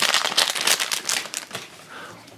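A foil blind-bag wrapper crinkling and crackling as it is pulled open by hand, a rapid run of crinkles for about a second and a half that then dies away.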